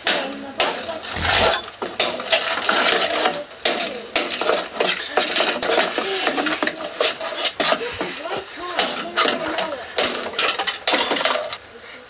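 Hammer striking a small Technics speaker's wooden cabinet again and again, with cracking and rattling debris as the box breaks apart.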